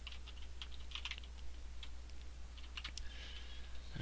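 Computer keyboard typing: soft, irregular keystrokes over a steady low hum.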